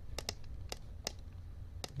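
About five sharp, separate clicks of a computer mouse over a low, steady hum.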